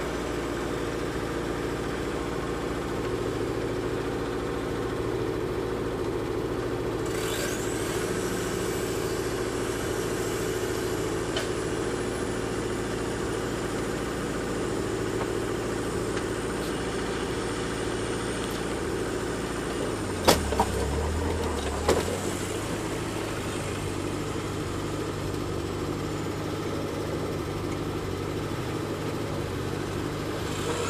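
Off-road vehicle engines running with a steady drone. A faint high whine rises about seven seconds in and fades slowly, and a few sharp knocks come about two-thirds of the way through.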